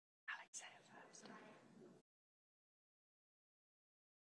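A faint, low voice speaking quietly for about a second and a half just after the start, then dead silence.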